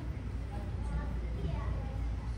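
Faint, indistinct voices talking over a steady low hum.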